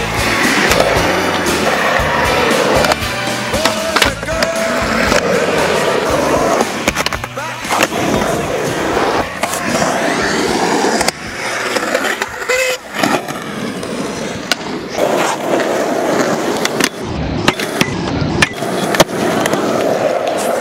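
Skateboard sounds over background music: hard wheels rolling on asphalt and concrete ramps, with several sharp clacks of the board popping and landing.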